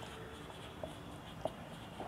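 Whiteboard marker writing on a whiteboard, a faint stroking scratch with a couple of light ticks as letters are formed.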